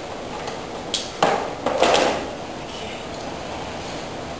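A sharp click about a second in, then a knock and a short clatter: a black plastic extension cord reel being handled.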